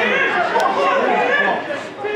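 Indistinct chatter of several voices talking over one another close to the microphone, with no single voice clear.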